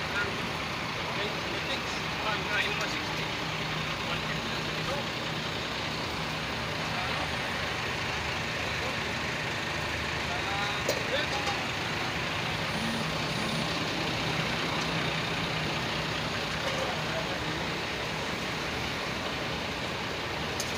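Steady low hum of an idling bus engine, running on without change.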